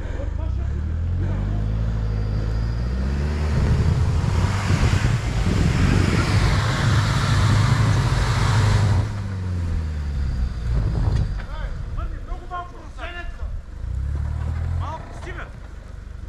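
Off-road 4x4 SUV engine revving hard as it climbs a muddy, snowy track, with tyres spinning and throwing mud and snow. The engine note rises about three seconds in, is loudest with the wheelspin from about four to nine seconds, then drops away, with a shorter rev near the end.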